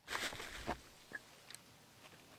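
Faint handling noise of hands working at the camper's roof edge: a short rustle at the start, a few light clicks and taps, and one brief faint squeak about a second in.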